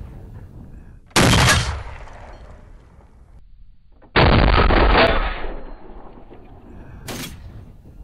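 Three loud .50 caliber rifle shots, each a sharp report that fades in a ringing tail: about a second in, about four seconds in, and about a second before the end. The middle one stays at full strength for about a second before it fades.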